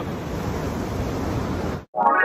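Ocean surf washing on the beach, a steady rushing noise that cuts off suddenly near the end.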